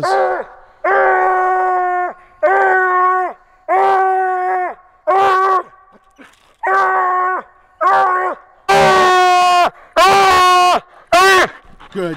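Coonhound barking treed: a run of long drawn-out bawls, about one a second, each held on a steady pitch, the last few longer and louder. The treed bark is the sign that the hound has a raccoon up the tree.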